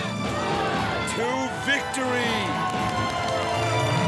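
A crowd cheering and shouting in celebration of a finished eating challenge, over background music.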